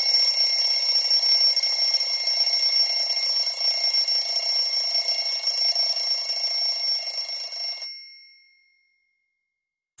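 A bell alarm ringing continuously and high-pitched, stopping about eight seconds in with a short ring-out.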